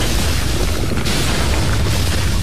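Cartoon factory-machinery sound effect as smokestacks start belching smoke: a steady heavy low rumble with repeated hissing puffs about once a second.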